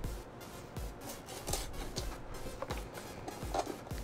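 Short, scratchy rubbing and peeling sounds as a paper tape seal is picked at and lifted off a cardboard box, over quiet background music.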